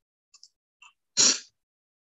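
A single short, sharp burst of noise a little over a second in, after a few faint clicks.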